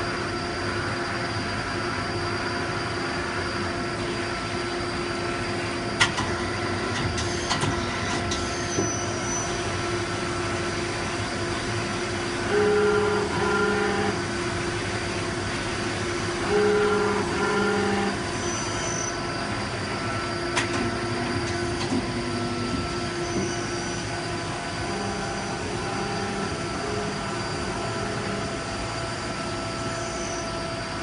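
Daewoo Puma 200MS CNC turn-mill center running under power: a steady mechanical whine made of several held tones. A sharp click comes about six seconds in, and twice in the middle a louder humming tone sounds briefly as the machine's axes move.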